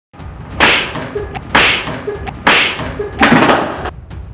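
Loud slaps of an open hand against a face, four of them about a second apart, each dying away quickly.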